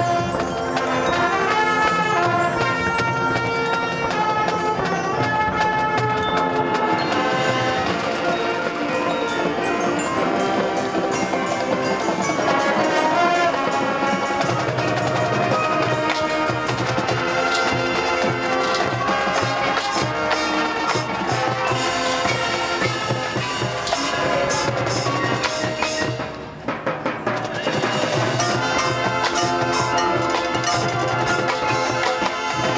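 High school marching band playing its competition show: sustained brass chords over drumline and front-ensemble mallet percussion, with dense rhythmic strokes building through the passage. The band drops out for a short break near the end, then comes back in.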